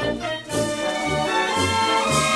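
Brass band music: trumpets and trombones holding chords over a bass line of short, alternating low notes, the full band swelling in about half a second in.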